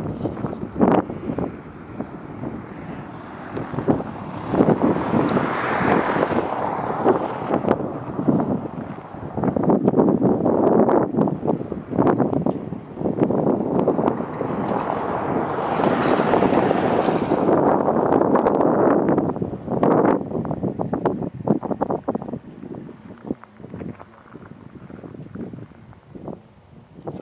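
Wind gusting over a camera microphone, a rumbling buffet that swells and eases several times and dies down near the end.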